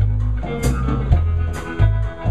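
Live blues band playing between sung lines: electric guitar, bass guitar and drum kit, with sustained bass notes and a few sharp drum and cymbal hits.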